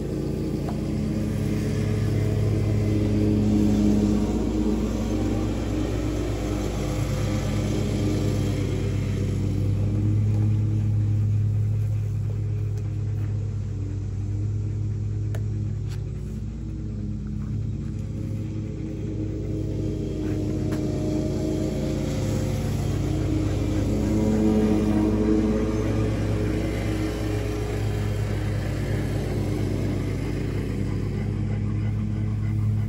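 Steady, low mechanical hum of a running motor or engine, swelling and easing slowly every several seconds.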